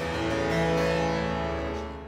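Flemish double-manual harpsichord playing several notes at once, closing on chords that ring on and slowly die away.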